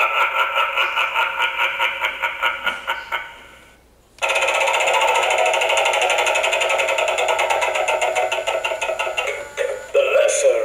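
Gemmy Animated Mystic Wheel playing a recorded sound effect through its small built-in speaker: a fast, even pulsing sound that fades out about three and a half seconds in. A second stretch of the same kind starts about four seconds in and runs until just before the end.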